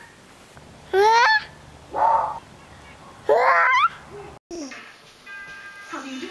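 A baby's high-pitched squeals: three short vocal shrieks, each rising in pitch, about a second apart.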